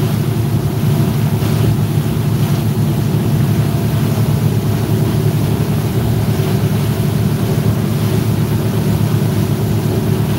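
A motorboat's engines running steadily under way, a low, even drone with a steady hiss over it.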